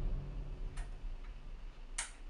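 A few sharp, separate clicks about a second apart, the last and loudest as a table lamp's switch is turned off.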